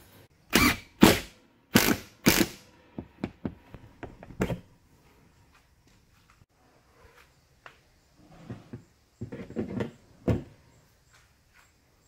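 Short knocks and scrapes of a broom handle against a PVC-pipe holder and the wall, strongest in a few bursts in the first two and a half seconds, then smaller clicks, a lull, and a few more knocks near the end.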